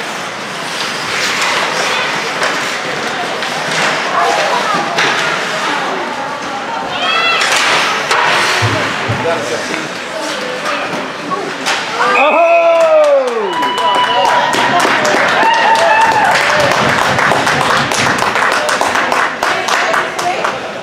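Ice hockey play heard from the rink-side stands: skates scraping, and sticks and the puck knocking against the ice and boards, under spectators' voices. About twelve seconds in a loud shout rises above the rest, and the knocks and voices stay at their loudest after it.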